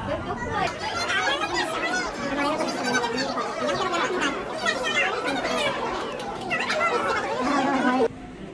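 Chatter of several voices talking over one another, some of them high-pitched. The chatter cuts off abruptly at the end.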